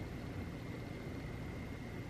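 Room tone: a steady low hum and soft hiss, with a faint thin high tone running through it and no distinct sounds.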